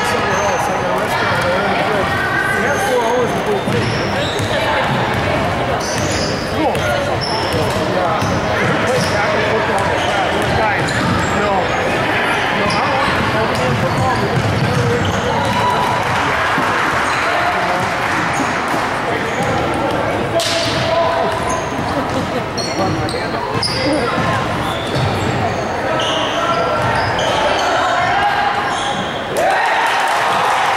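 Basketball game play on a gym's hardwood court: a ball bounced and dribbled, sneakers squeaking in short high chirps, and a steady hubbub of spectators' and players' voices filling the hall.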